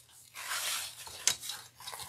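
Ribbon rustling and rubbing as hands gather and pinch a stack of ribbon loops at the centre of a bow, loudest about half a second in, with a short sharp tick a little after a second in.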